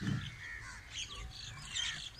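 Several birds chirping and calling in quick, overlapping high-pitched notes.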